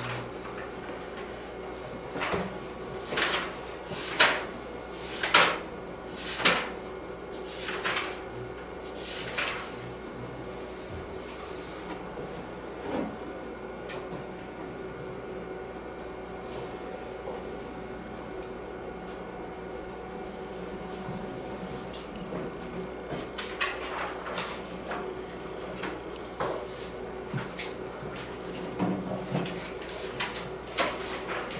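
Textbook pages being turned and handled: a run of about eight short papery swishes in the first ten seconds, then scattered smaller rustles and clicks near the end. A faint steady electrical hum runs underneath.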